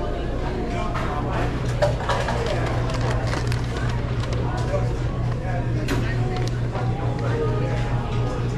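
Restaurant dining-room ambience: indistinct background talk over a steady low hum, with scattered clicks and clatter.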